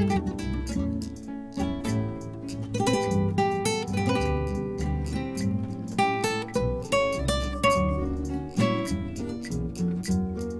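Two acoustic guitars, one of them a Spanish guitar, playing an instrumental piece live: a picked melody over lower chordal accompaniment, note after note without a break.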